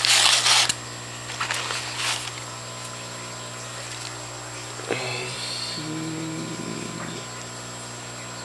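Newspaper packing crumpling and rustling as hands dig through a cardboard shipping box, loudest in the first second with a couple of short rustles after, over a steady low hum.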